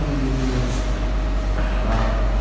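A man's voice in short phrases over a steady low hum.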